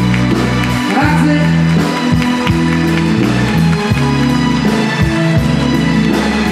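Live Italian dance-band music, loud and continuous, with bass, drums and keyboard-like sustained notes and a woman's singing voice over it.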